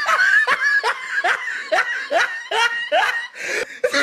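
Laughter: a quick run of about ten short pulses, about two and a half a second, each sliding up and down in pitch.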